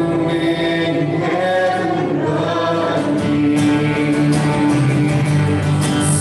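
Worship song sung by a group of voices with acoustic guitar accompaniment.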